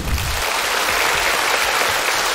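Studio audience applauding, starting abruptly and holding steady.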